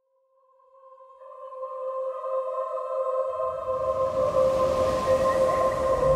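Swelling trailer sound design: a held, sonar-like tone fading in from silence, joined by a second tone an octave above. A deep rumble builds under it from about halfway through, with a rushing hiss near the end.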